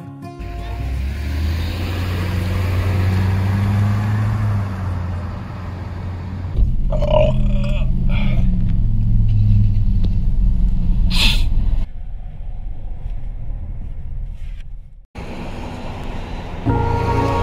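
Low outdoor rumble, then the steady low road rumble inside a moving car's cabin, with one short sharp noise shortly before the rumble eases off. The sound cuts out briefly near the end.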